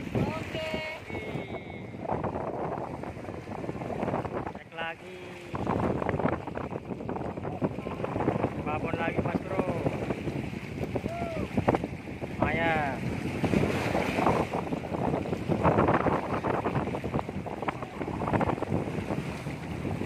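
Wind buffeting the microphone over waves washing against the rocks of a sea breakwater, a steady rushing noise.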